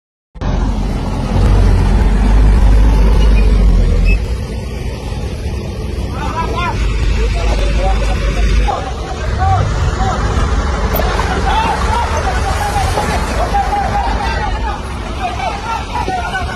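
Dump truck engine running with a heavy low rumble as the truck tips its load of garbage, with a crowd of people talking and calling out over it from about six seconds in.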